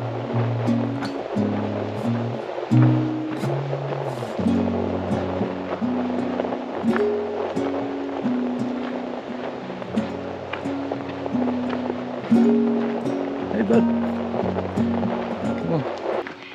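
Background music: held chords over a bass line that changes note about every second.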